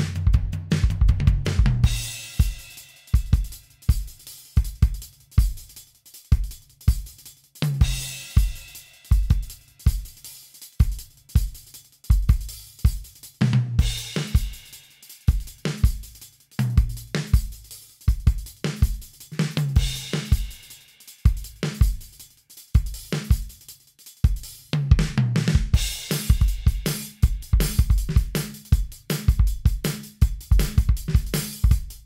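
Modern R&B-style drum track looping at 160 BPM in 4/4: kick, snare and hi-hat in a steady repeating groove, with a cymbal crash washing in at the start of each phrase, about every six seconds.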